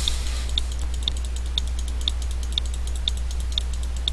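Computer mouse button clicked repeatedly at an even pace, about twice a second: the 'move up' arrow being clicked over and over to move an item step by step to the top of a list. Under it runs a steady low electrical hum.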